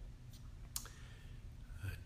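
Quiet room tone with a low hum and two faint clicks, about a third of a second and three quarters of a second in.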